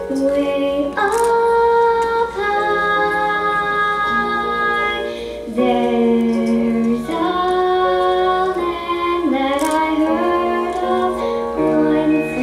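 A young girl singing a solo into a microphone over instrumental accompaniment, in slow, long held notes.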